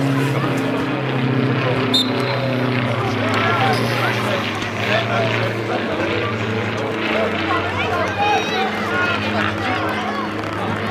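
A steady low engine drone whose pitch shifts up and down every second or so, under scattered distant voices from the pitch.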